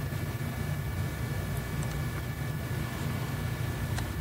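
Steady low electrical hum with a faint high whine, the background noise of the recording setup, with a few faint clicks near the middle.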